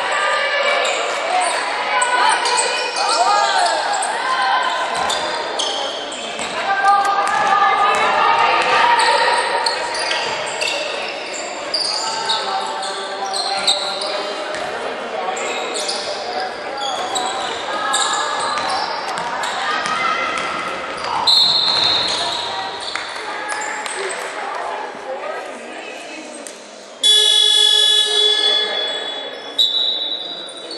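Basketball being dribbled on a hardwood court in an echoing hall, with players' voices calling out over it. A short referee's whistle sounds about two-thirds of the way in. Near the end a loud, steady electronic buzzer sounds for about two seconds, and another whistle follows.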